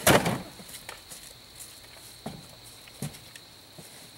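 A loud clatter at the start, then two lighter knocks about two and three seconds in, of gear being handled at the bed of a Polaris utility vehicle. A steady high insect trill runs underneath.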